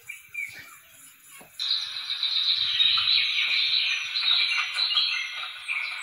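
Soundtrack of the wildlife footage playing on the screen, thin and without bass. It is faint at first, then about a second and a half in a dense high-pitched chorus starts, with a short chirp repeating about twice a second.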